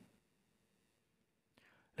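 Near silence, with a faint short sound near the end.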